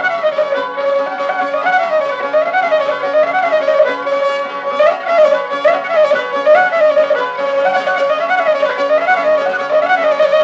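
Instrumental Cretan syrtos dance tune: a bowed string instrument plays an ornamented melody of short rising-and-falling figures over a steady rhythmic accompaniment. It is an old mid-century recording with no deep bass.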